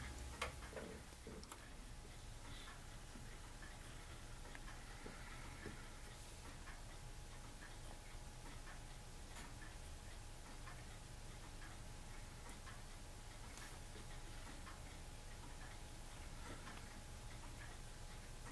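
Faint room tone: a steady low hum with scattered faint small ticks and clicks.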